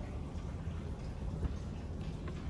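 Low, steady background rumble with no distinct sound events.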